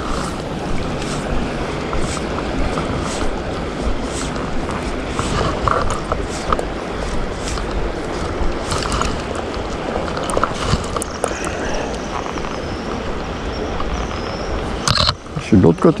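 Steady rushing noise of river water and wind on the microphone around a wading fly fisherman, with faint rustles as the fly line is cast.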